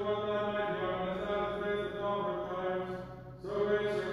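Liturgical chanting: a voice sings long held notes at a nearly steady pitch, with a brief pause about three and a half seconds in.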